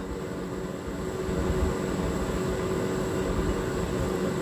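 Steady low rumble of background noise with faint steady tones above it.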